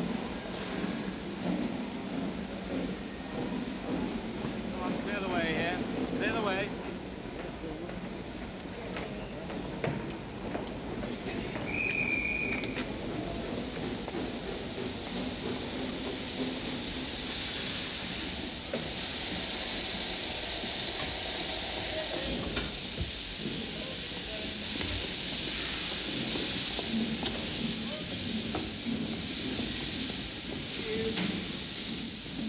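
Steam locomotive blowing off steam, a steady hiss under a crowd's murmur, with a short high whistle-like tone about twelve seconds in.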